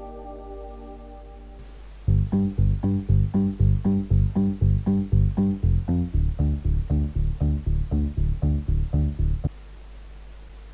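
Synthesized bass line sequenced in a DAW, playing short, evenly spaced staccato notes at about four a second; it starts about two seconds in and stops shortly before the end. Before it, the tail of a sustained synth chord fades out.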